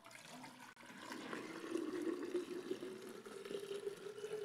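Water poured from a pitcher into a glass jar: a faint pouring that builds about a second in, with a low tone rising slightly as the jar fills.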